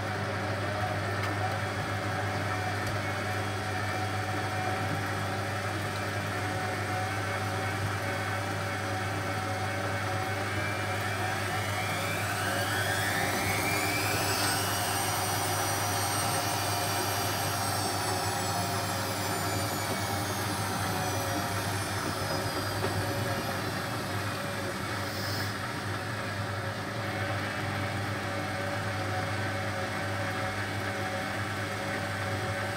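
Hotpoint WF250 front-loading washing machine in a short spin burst: over a steady motor hum, about twelve seconds in the motor whine rises quickly as the drum speeds up, holds for a few seconds, then slowly falls away as the drum spins down.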